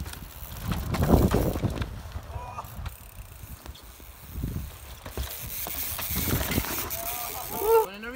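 Mountain bike tyres rumbling and skidding through loose dirt as riders slide through a rutted corner, loudest about a second in and again in a long hiss over the last few seconds. A voice calls out near the end.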